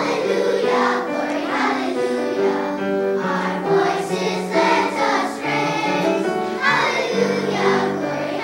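A young children's choir of second-graders singing together in unison, with piano accompaniment sustaining low notes underneath. The voices come in right at the start, after a piano introduction.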